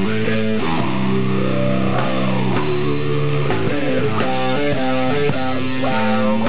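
Sludge metal band playing an instrumental passage: distorted electric guitar riffs that change chord every second or so, over bass guitar and drums.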